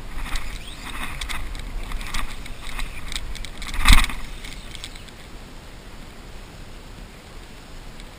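Shallow water splashing and sloshing close to the microphone in a run of short strokes, the loudest splash about four seconds in, then settling to a softer wash, with low wind rumble on the microphone.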